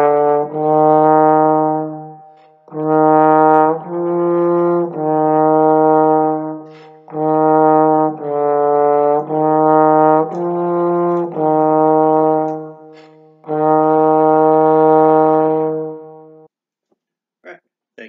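Trombone playing a slow line of sustained half notes that move up and down by half and whole steps with no skips, in phrases broken by short breaths. The playing stops near the end, followed by a brief rustle.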